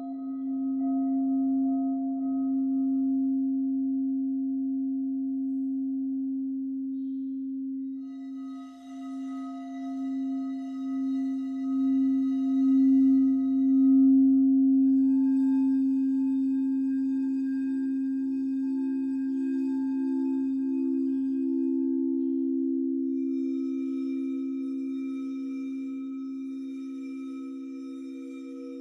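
Frosted quartz crystal singing bowls sounding under a rubbing wand: one low tone hums the whole time with a slow pulse, and a second, slightly higher bowl joins about halfway, wavering at first and then steady. A hand-held metal singing bowl adds a higher, shimmering ring that comes in three times.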